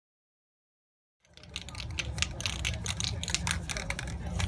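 Aerosol spray paint cans being shaken, the mixing balls inside rattling in quick, irregular clicks over a low rumble; the sound starts abruptly about a second in.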